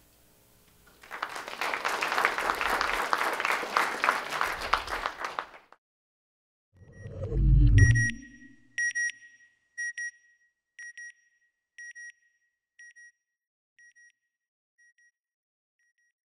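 Audience applauding for about four seconds. Then a low whoosh ending in a loud boom, followed by a string of short electronic beeps, about one a second, growing fainter until they die away: a sonar-like outro sound effect.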